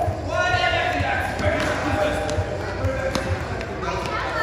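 Children's bare feet thudding on foam mats as they run, about two to three dull thuds a second, with children's high voices calling over them.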